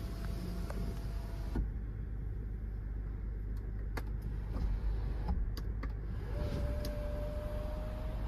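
Electric panoramic sunroof motor of a 2023 Changan Ruicheng PLUS whining steadily as the glass panel slides, stopping about one and a half seconds in. A few clicks from the overhead console switch follow, and the motor starts again about six seconds in with a whine that rises slightly in pitch.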